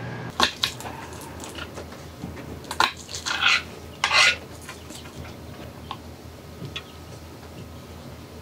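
A kitchen knife cutting garlic cloves on a cutting board: a few sharp knocks and short crunches in the first half, then only faint light taps.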